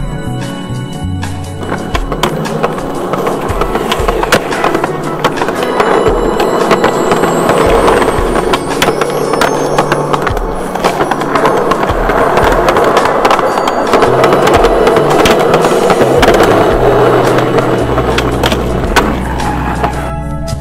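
Skateboard wheels rolling hard on concrete, with sharp clacks of the board, over background music with a bass line. The rolling comes in about two seconds in and cuts off just before the end.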